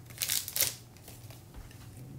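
Foil trading-card pack wrapper crinkling as it is pulled open and the cards are drawn out, a few short crinkles in the first second.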